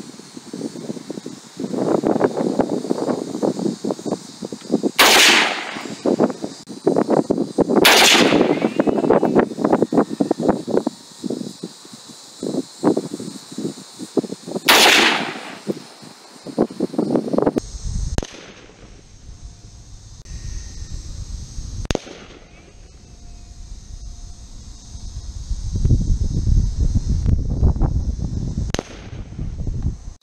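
AR-15 rifle firing single shots: three loud, sharp reports several seconds apart, then a few fainter shots in the second half.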